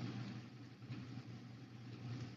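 Faint hiss with a low steady hum from an open voice-chat line, with no speech.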